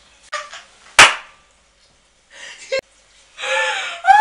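A single sharp smack about a second in, the loudest sound here, then laughter breaking out near the end.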